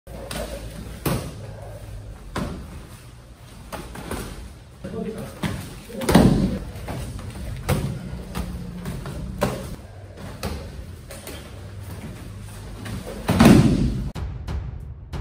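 Sparring hits: gloved punches and kicks landing on padded headgear, guards and bodies, heard as sharp slaps and thuds every second or two. The loudest thud comes near the end, as one fighter ends up on his back on the mat.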